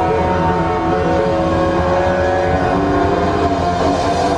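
Rock band playing live: distorted electric guitars holding sustained notes, some of them sliding in pitch, over bass and drums.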